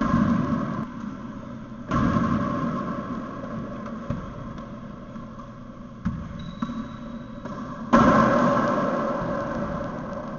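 Racquetball rally: sharp cracks of the ball off racquets and the court walls, each ringing on in the hollow echo of the enclosed court. Loud hits at the start, about two seconds in and, loudest, about eight seconds in, with lighter knocks around six seconds, over a steady background hum.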